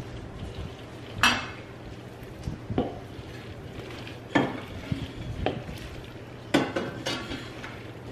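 A long wooden spoon stirring a thick bean, corn and sour cream mixture in a large stainless steel mixing bowl, knocking and scraping against the metal sides about six times, the loudest about a second in.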